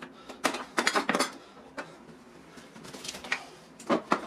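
Hard plastic clicking and clattering as parts of a Husky Connect modular rolling toolbox are handled: a quick run of knocks between about half a second and a second and a quarter in, then a few lighter clicks near the end.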